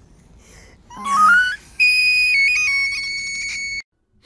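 A short rising squeal about a second in, then a high, steady whistle-like tone held for about two seconds with a few small jumps in pitch. It cuts off suddenly near the end.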